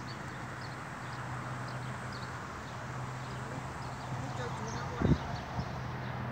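Outdoor garden ambience: a steady low hum with faint voices in the distance and scattered faint high chirps, and a short knock about five seconds in.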